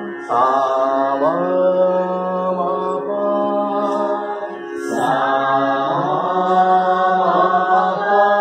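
A voice singing long held notes in a slow chant, sliding up into each new note, over a steady tanpura drone.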